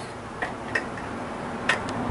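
A few light, sharp clicks and taps as the aluminium top track of a retractable screen door is pushed into place against the screen housing and door frame.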